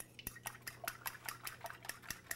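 Eggs being beaten in a bowl, the utensil clicking lightly against the bowl in a quick, steady rhythm of about six or seven strokes a second.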